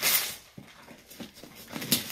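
Gift-wrapping paper being torn off a box by hand, with one loud rip at the start and another near the end, and paper rustling between.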